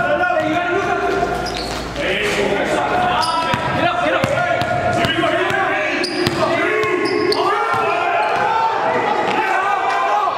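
A basketball being dribbled on a hardwood gym floor, bouncing several times, with players' voices echoing in the large hall.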